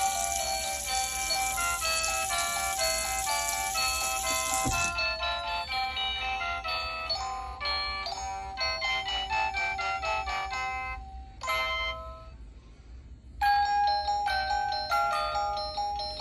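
Electronic chime melody from an Avon fiber-optic musical Christmas village fountain, playing a simple tune note by note. It pauses briefly about twelve seconds in, then a tune starts again. A steady hiss runs under the first five seconds and cuts off suddenly.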